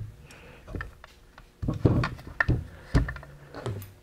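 Aluminium cylinder block and crankcase of a Honda CBR600RR engine being shifted and turned over on a wooden bench: several dull thumps and knocks with small clicks, spread irregularly over a few seconds.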